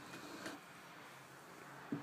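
Quiet room tone with faint handling of a plastic wood-glue squeeze bottle as glue is spread on MDF, and a light click about half a second in.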